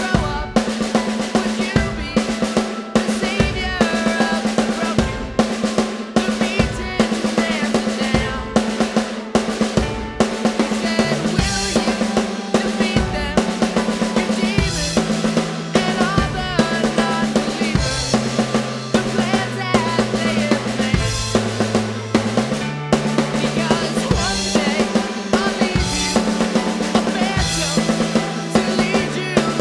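Sampled acoustic drum kit (Addictive Drums 2) played from an electronic drum kit: a driving snare-led beat with rolls, rimshots and bass drum, over the song's backing track. A bass line moving between notes comes in about a third of the way through.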